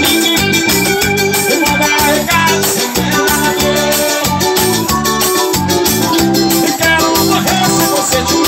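Loud live band music led by an electronic keyboard, with held organ-like notes over a steady, driving beat.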